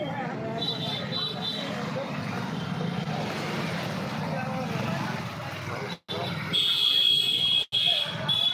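Motorbikes running past amid crowd chatter on a busy street. A shrill steady tone comes in briefly about a second in and again, louder, near the end, and the sound cuts out for an instant twice.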